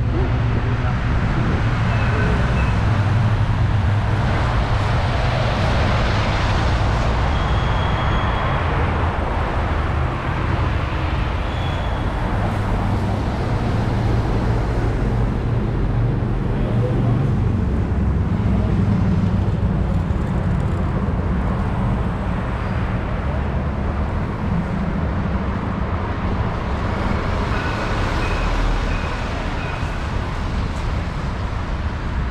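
City street traffic: car and bus engines running and tyres on the road, a steady rumble that swells several times as vehicles pass close by.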